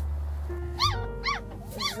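Small puppies whining: three high, arching cries in quick succession from about a second in.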